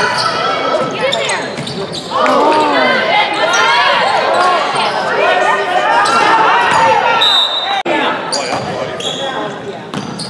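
Basketball game sounds on a gym court: the ball bouncing on the hardwood floor, with players and spectators shouting, echoing in a large hall. The busiest stretch, many overlapping calls, runs from about two seconds in until about seven seconds in.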